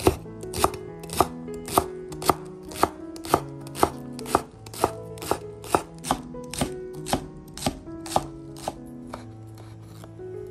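Chef's knife chopping green onions on a bamboo cutting board, sharp even strikes about two a second that stop shortly before the end.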